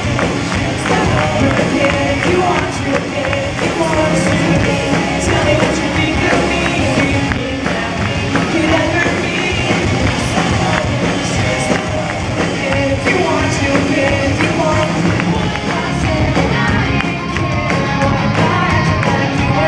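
Live rock band performing a song: a lead vocalist singing into a handheld microphone over electric guitar and the rest of the band playing a steady beat.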